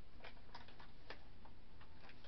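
Light, irregular clicks and taps of a paper note or card being picked up and handled at a tabletop, over a steady faint room background.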